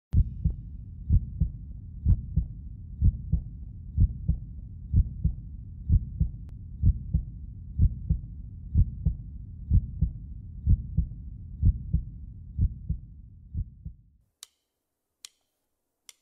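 Heartbeat sound effect: a low double thump about once a second over a low drone, fading out near the end.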